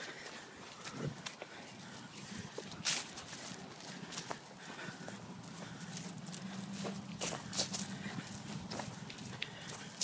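Footsteps and rustling on dry grass and fallen leaves, making irregular sharp taps, with a low steady hum between about five and nine seconds in.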